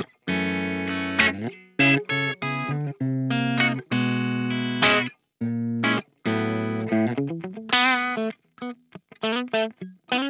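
Ibanez SA360NQM electric guitar on its bridge pickup, played through a Laney Ironheart amp: a string of short chord stabs that stop sharply, with a wavering, vibrato-shaken note about eight seconds in.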